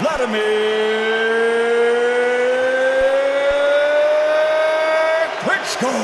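A ring announcer's voice holding one long drawn-out vowel for about five seconds, rising slowly in pitch, followed by a short swooping inflection near the end.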